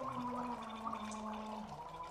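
Several people gargling into plastic cups together, their voices held as overlapping steady tones at different pitches with a bubbling break in them.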